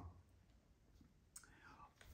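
Near silence: room tone, with a faint click and a soft breath near the end.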